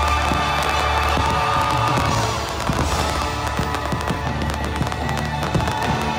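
Fireworks bursting and crackling over loud music, the sharp cracks coming thicker from about two seconds in.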